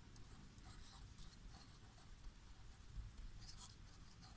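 Faint scratching strokes of a marker pen writing words on paper.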